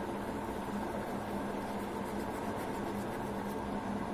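Steady background hum with a hiss, like a small appliance or fan running, holding an even level throughout.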